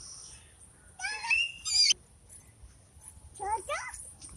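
A young child's high-pitched squeals that rise in pitch, twice: about a second in and again near the end.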